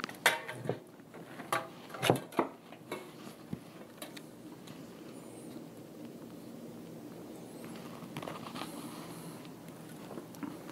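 Handling of an opened ATX computer power supply and its wire bundles. There are several sharp clicks and knocks in the first three seconds and one more about four seconds in, then only faint handling noise.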